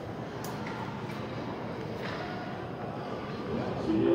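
Indoor ice rink during a hockey game: a steady hum of arena ambience with faint murmur from spectators, broken by a few sharp knocks from play on the ice in the first two seconds.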